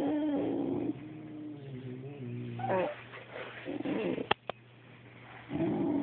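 A Boxer dog's low, drawn-out grumbling vocalizations, a purr-like moaning 'woo' sound, coming in bouts: loud at the start, quieter calls in the middle, and loud again near the end. Two sharp clicks sound just past the middle.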